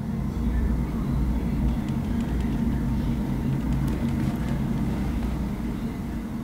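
A deep, steady low rumble that swells in just after the start, over a sustained low droning hum.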